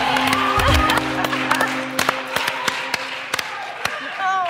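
The dance song's last held notes die away about a second in. Scattered hand clapping follows, irregular and thinning out.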